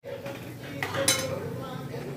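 Steel spoon stirring and scraping a thick masala gravy in an aluminium kadai, with one sharp metal clink about a second in.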